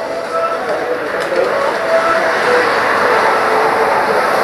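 Steady outdoor background noise with faint, scattered distant voices.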